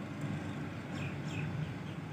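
Steady background room noise with a low hum, and a few faint short chirps about a second in.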